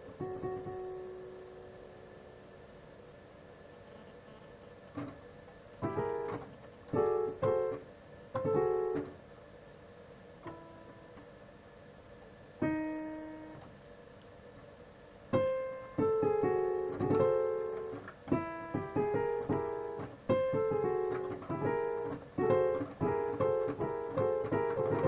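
Digital piano played slowly. A held note dies away, then after a quiet pause come scattered single notes and chords that grow into a denser run of chords in the last third.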